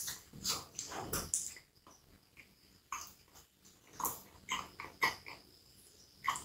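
Close-miked eating: a bite into a soft-bun hot dog, then chewing with wet mouth clicks and smacks. The sounds come in a cluster at the start, pause briefly, then pick up again as short clicks.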